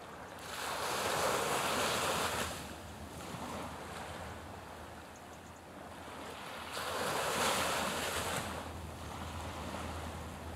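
Small waves washing in, two surges of surf about six seconds apart, each swelling and falling away over about two seconds over a steady low hiss.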